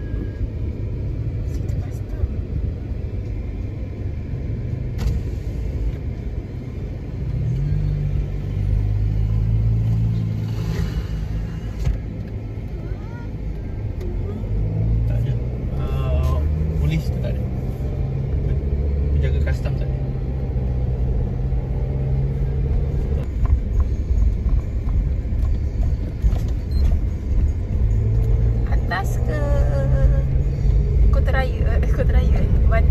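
Car cabin noise: a steady low engine and road rumble inside a moving car. It grows louder about seven seconds in as the car pulls away and gathers speed.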